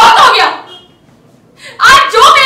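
A woman's voice acting out a dramatic line in an audition monologue: one loud phrase, a pause of about a second, then she starts speaking again near the end.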